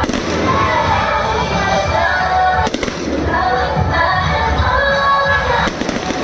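Firecrackers crackling in a rapid, continuous run, mixed with loud music with held tones. The crackle dips briefly near the middle and again near the end.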